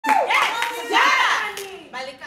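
Audience clapping and cheering, with voices calling out over the applause, fading away toward the end.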